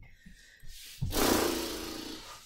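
A woman's long, heavy breath out. It starts faintly and becomes a loud breathy rush about a second in, as she gets her breath back after the hopping kick exercise.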